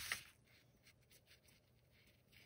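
Clothes iron sliding over cotton fabric, a brief scraping rustle that stops about a quarter second in, followed by faint rustling of the cloth being handled.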